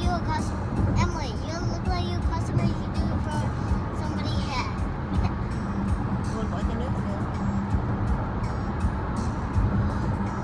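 Steady low road and engine rumble inside a moving car's cabin, with a young girl's voice rising and falling over it in the first few seconds and again briefly around halfway.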